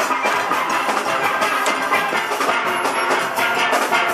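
Steel band playing live: many chrome steelpans struck together in a steady rhythm, the ringing pitched notes of the whole pan section sounding at once.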